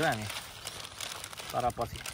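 A man's voice trailing off at the start and a few short spoken syllables about one and a half seconds in, with a faint crinkling rustle in the gap between.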